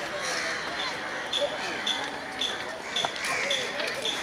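Level-crossing warning alarm sounding short, high beeps about twice a second, over the voices of people crowding the crossing.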